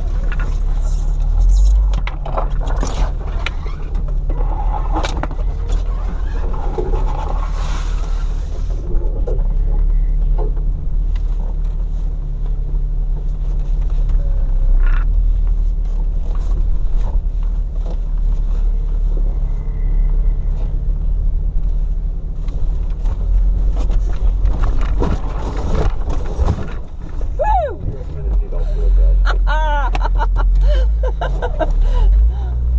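A 4x4's engine running steadily at low revs as it crawls through deep snow, with snow-laden branches scraping and slapping along the hood and body in bursts.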